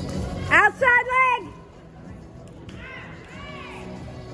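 A person close by yelling three loud, high-pitched shouts in quick succession, cheering on a barrel-racing horse and rider, followed by fainter calls near the end. Arena music plays underneath.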